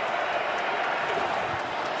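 Steady crowd noise from the spectators in a football stadium.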